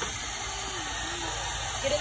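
Handheld hair dryer blowing steadily, with a voice faintly over it.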